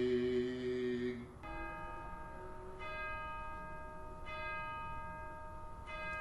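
A man's voice holding the last sung note of a hymn, ending about a second in, then a bell struck four times about a second and a half apart, each strike left ringing.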